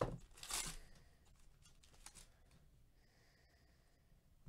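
Foil wrapper of a Topps Finest baseball card pack being slit and torn open: a few short crinkling rustles in the first second and another just after two seconds in, followed by faint handling of the cards.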